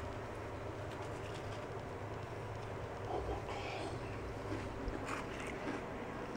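A person chewing a bite of chocolate chip cookie with crisp, crunchy edges. It is faint, with a few small sounds a little past halfway, over a steady low hum.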